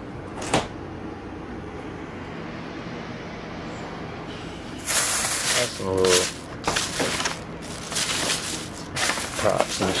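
Plastic shopping bag rustling and crinkling in repeated bursts as hands handle it, starting about halfway through, over a steady low room hum.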